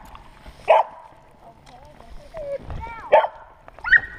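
A dog barking from the shore: two sharp barks, about a second in and again about three seconds in, with a few softer, shorter calls between them.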